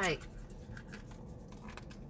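Faint scratching and small clicks of a key prying at a sealed cardboard cosmetics box.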